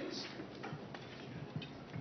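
Room ambience of a hall, with a few faint ticks and knocks scattered through it and a short hiss near the start.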